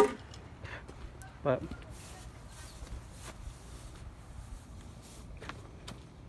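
A single sharp knock as a gloved hand strikes a wooden board, followed by low outdoor background with a few faint taps.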